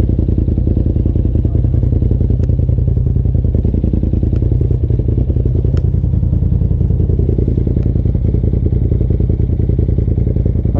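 Polaris RZR side-by-side engine idling steadily at close range, a dense even low pulsing with no revving.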